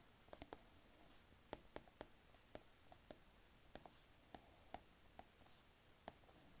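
Faint, irregular clicks of a stylus tip tapping on a tablet's glass screen during handwriting, about fifteen light ticks with a few brief soft scratches of strokes between them.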